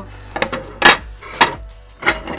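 Plastic Lego Art mosaic panels, studded with round tiles, set down and knocked against each other on a wooden tabletop: three sharp clacks, the middle one the loudest.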